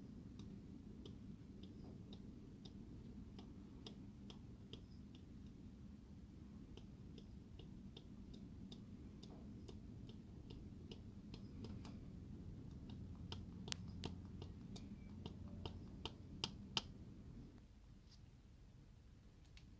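Faint, irregular light clicks as a wooden stick is pressed and worked through a fine mesh onto a small model seat-cover piece to texture it. The clicks come sharper and more often in the last few seconds, over a low steady hum.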